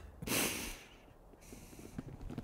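A cartoon character snoring as he dozes off: one loud, noisy breath, then a quieter, thinner hissing breath from about one and a half seconds in.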